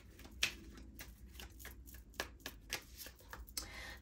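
Tarot cards being drawn and laid down on a wooden table: a string of faint, irregular card taps and slides.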